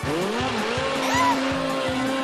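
Cartoon background music with a regular beat, over a sound effect of a snow scooter speeding and skidding across snow.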